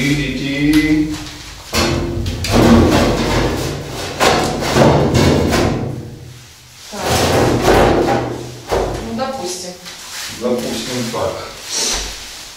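Background music with knocks, thuds and scraping from a heavy panel being shifted and set down on the floor.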